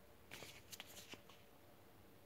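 Faint rustling and small clicks of a paper card booklet being handled, in a short cluster within the first second, otherwise near silence.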